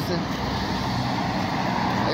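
Road traffic noise: a steady rush of passing vehicle sound, swelling a little about halfway through, over a low rumble.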